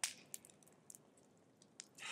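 A sharp click at the start, then a few faint, scattered ticks.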